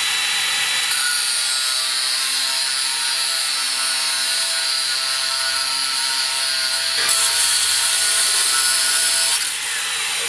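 Makita angle grinder with an abrasive cut-off wheel cutting through steel rebar: a steady high whine from the motor over the grinding of the disc against the bar, held at full speed under load.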